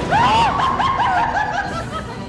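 High-pitched cackling laugh: a quick run of about eight short arching 'ha' notes, about four a second, the first the loudest and the rest trailing off.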